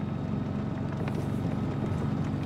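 Sherman tank on the move, its engine giving a steady low drone under a fast, even clatter from the tracks.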